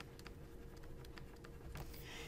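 Faint light clicks and taps of a stylus writing on a tablet screen, coming at uneven intervals, over a faint steady hum.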